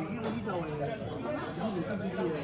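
Diners' chatter: several people talking over one another around a restaurant table.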